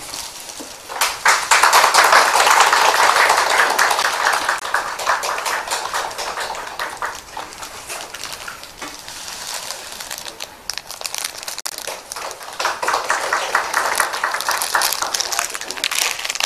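Applause from a small group of people clapping in a room. It swells up about a second in, dies down through the middle, and rises again near the end.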